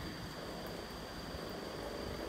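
A 3 W single-outlet aquarium air pump running, pushing air through a homemade biofilter so that it bubbles into the tank; a steady, even hum and hiss.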